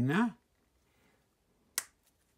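A short rising hum from a voice at the start, then a single sharp click near the end as small Lego plastic pieces are snapped together.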